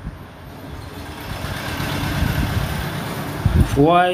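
A motor vehicle passing, a rushing noise with a low rumble that swells up over about a second and holds, before a man's voice starts near the end.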